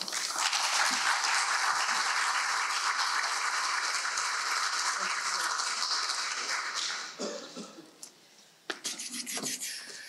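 Audience applauding steadily for about seven seconds, then the applause dies away to a few scattered knocks and rustles.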